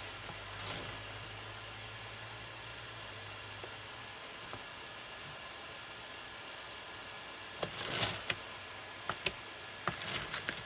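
Quiet room tone with a low steady hum for the first four seconds, then a few brief rustles about eight seconds in and a couple of short clicks just after.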